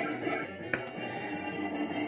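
Fruit King 3 slot machine playing its electronic tune while the lights run around the fruit board during a round. A sharp click comes a little under a second in.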